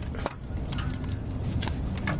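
A few light, scattered clicks and taps over a low steady rumble: hands and tool working the upper starter-motor mounting bolt loose under the vehicle.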